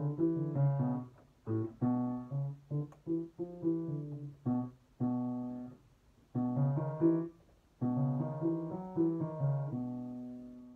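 Piano played for vocal warm-ups: short phrases of struck chords and notes, each left to ring, with brief pauses between. The last chord rings away near the end.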